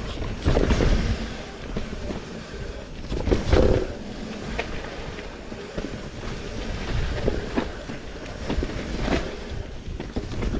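Commencal mountain bike riding down a dirt singletrack: tyres rolling over the rough ground, with repeated knocks and rattles from the bike over bumps and wind buffeting the microphone. The loudest jolts come about three and a half seconds in.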